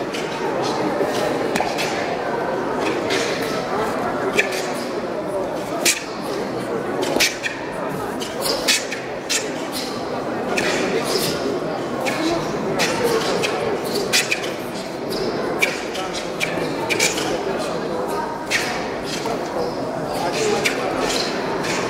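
Murmur of voices echoing in a large sports hall, with sharp snaps at irregular intervals, a second or two apart, from taekwon-do techniques: the uniform cracking and feet striking the mat on punches and kicks during a pattern.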